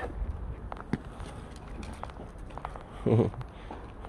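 Faint footsteps on a gravelly dirt yard with a few light ticks, and one short low voice sound about three seconds in.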